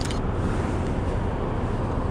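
Steady low rumble of city street noise, traffic and wind on the microphone, with a brief click right at the start.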